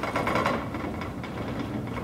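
Steady low hum of room noise in a large hall, with faint rustling and small ticks in a pause between speech.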